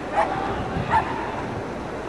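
A dog barking twice, about three-quarters of a second apart, over steady wind and surf noise.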